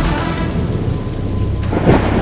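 Heavy rain pouring down with a low rumble of thunder, mixed over dramatic background music; a louder low boom comes near the end.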